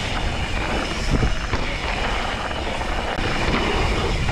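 Propain Tyee mountain bike rolling fast down a dry dirt trail: a steady rumble of tyres on dirt, with wind on the camera microphone and a couple of bumps just over a second in.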